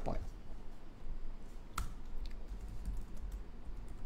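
Typing on a computer keyboard: scattered soft key clicks, with one sharper click about two seconds in.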